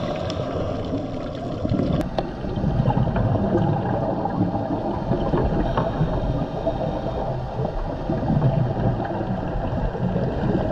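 Muffled underwater noise picked up by a dive camera in its housing: uneven low rushing and gurgling of water and a scuba diver's exhaled bubbles, swelling and fading, with a single sharp click about two seconds in.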